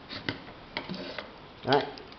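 Plastic pump head of a hand-pump pressure sprayer being unscrewed from its bottle: a few short, light clicks and scrapes from the plastic threads.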